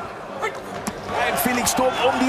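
Televised boxing match audio: a man commentating over arena crowd noise, with a few sharp thuds from the ring.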